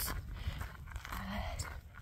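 A brief pause in a woman's talk, with one hesitant "uh" over a steady low rumble and faint footsteps crunching on a gravel path.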